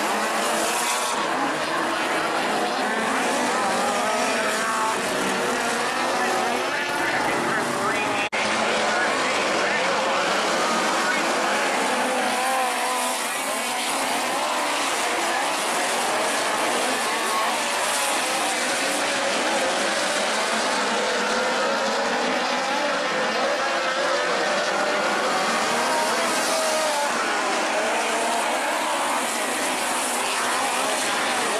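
A pack of midget race cars running laps on a dirt oval, several engines overlapping and rising and falling in pitch as they go through the turns. The sound breaks briefly about eight seconds in.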